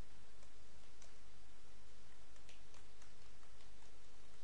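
Faint, irregular clicks from a computer keyboard and mouse, a few a second, over a steady background hiss and low hum.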